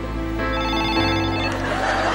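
A telephone rings for about a second over sustained backing music.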